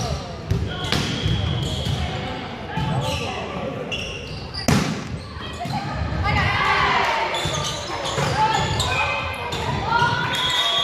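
Volleyball rally in a gymnasium hall: several sharp slaps of hands and arms on the ball, the loudest about halfway through, among players' shouts and voices, all echoing in the large hall.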